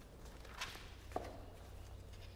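Footsteps on a tiled floor: a few soft steps with one sharper click a little over a second in.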